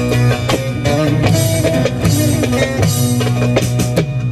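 Instrumental passage of Turkish folk music: a bağlama (long-necked saz) plucks the melody over darbuka drumming and a sustained low bass note.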